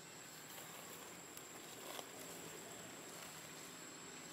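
Quiet forest ambience: a steady, high-pitched insect drone over a soft hiss, with a faint tap about two seconds in.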